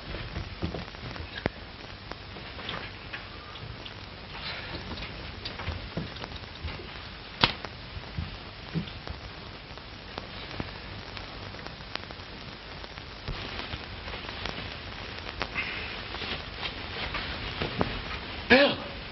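Hiss and crackle of a worn 1930s optical film soundtrack: a steady hiss dotted with scattered clicks, with one sharper pop about seven seconds in.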